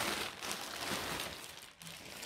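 Plastic packaging rustling and crinkling as it is handled and opened, in uneven bursts that ease off near the end.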